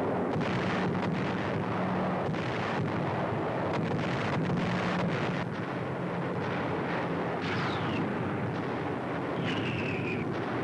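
A bombing-raid soundtrack of repeated explosion blasts over a steady drone of aircraft engines. A falling bomb whistle comes about seven and a half seconds in, and another high whistle near the end.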